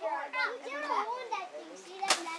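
Children's voices chattering and calling out in the background, indistinct.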